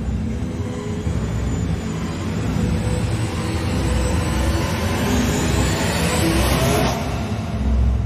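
Tense film soundtrack: a low rumbling drone under a rising whoosh that builds for several seconds and cuts off suddenly about seven seconds in.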